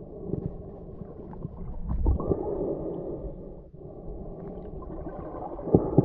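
Muffled underwater noise picked up by a submerged camera: water moving and gurgling around it, swelling about two seconds in, with a few faint knocks and one sharper, louder knock near the end.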